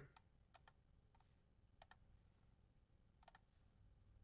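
Near silence with a few faint computer mouse clicks: three pairs of short clicks, about a second and a half apart.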